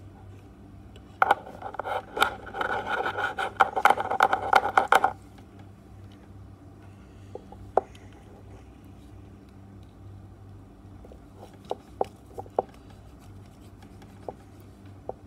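Scissor blades scraping and snipping at the insulation of a fan's power flex to strip the wire: a dense run of scratchy clicks lasting about four seconds. A few light separate clicks follow later.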